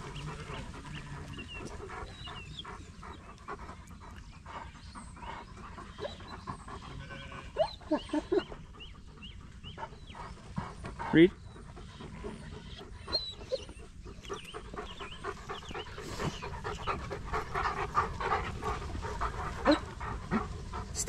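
A working sheepdog panting close by, with a large mob of ewes moving and bleating behind it. One louder call rises and falls about eleven seconds in.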